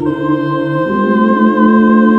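A woman singing wordless held 'ooh' notes into a microphone over other sustained vocal tones; the lower notes step up in pitch about a second in.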